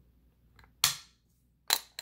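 Two sharp clicks, about a second in and near the end, as wooden revolver grip panels and their metal U-mount are pushed onto a Colt Anaconda's stainless grip frame.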